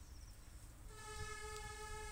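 A faint horn sounds one steady held note, starting about a second in.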